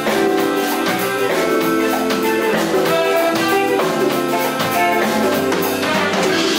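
Large funk-jazz band playing live: drums and percussion keep a steady, even beat under keyboards and horns.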